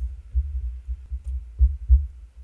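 Irregular deep thumps and a low rumble, with nothing in the middle or high range.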